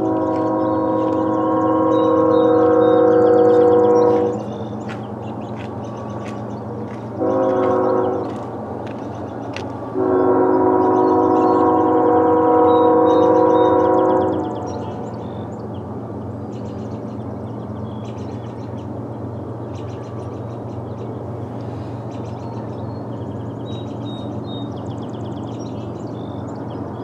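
Canadian National ES44AC lead locomotive's multi-note air horn sounding a long blast, a short blast about seven seconds in, then another long blast, as the train approaches. A steady low rumble runs underneath.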